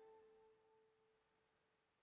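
Near silence: the last held note of a hymn's accompaniment fades out within the first half-second, leaving silence.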